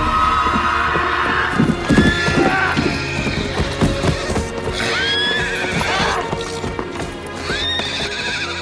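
A horse galloping, its hoofbeats over film score music, and the horse whinnying about five seconds in and again near the end.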